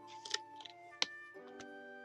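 Soft background music with steady tones, over paper and plastic packaging rustling as a paper pad is handled and opened. A single sharp click comes about a second in.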